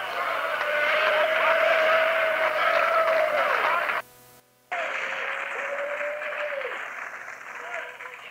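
A church congregation responding noisily with voices and clapping, with a long held note over the din. About four seconds in the recording drops out for half a second, then the congregation noise resumes with another held note.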